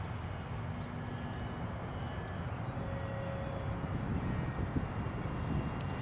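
Wind rumbling on the microphone, with a few faint thin tones above it and a brief click near the end.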